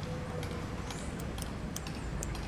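Quiet street ambience: a low steady hum of distant traffic, with a few faint light clicks.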